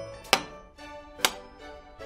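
Two knife chops through eggplant onto a wooden cutting board, about a second apart.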